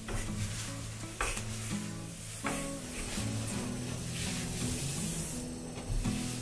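Glass cooktop being cleaned, with hissy scrubbing sounds and two sharp clicks about one and two and a half seconds in, over soft background music.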